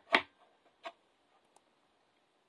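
A sharp click just after the start, then a fainter tick under a second in, over quiet room tone.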